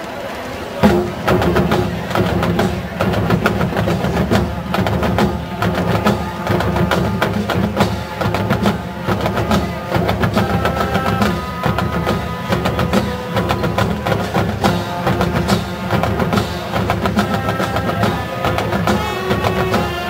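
A college marching band playing, brass and wind lines over a drumline's steady rhythm, coming in with a loud hit about a second in.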